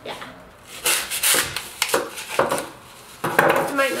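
Floral foam blocks being handled against a plastic pot and their plastic wrapping crinkling as it is peeled off: several short rustles and scrapes, the loudest about a second in and near the end.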